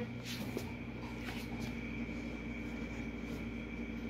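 Steady low hum of a running electrical appliance, with a few faint clicks and rustles in the first second and a half.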